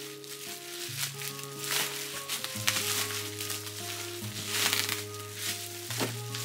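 Plastic bubble wrap crinkling and crackling in several bursts as it is pulled and unwrapped from a box, with packing tape being peeled, over soft background music with held notes.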